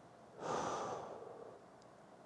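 A man's soft exhalation, one breath out lasting about a second and starting about half a second in, timed with a standing side-bend stretch.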